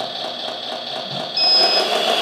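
RC articulated dump truck's sound module playing a steady engine-running sound. About one and a half seconds in it gets louder, and a high electronic beep sounds for about half a second.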